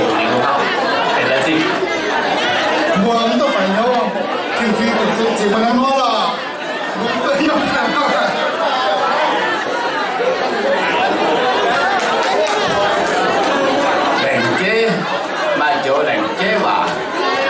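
A man speaking into a handheld microphone in a large hall, with a crowd chattering underneath.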